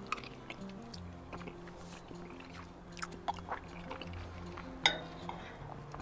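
Soft background music with held notes, under small wet clicks of a person chewing grilled provolone cheese, with one sharper click about five seconds in.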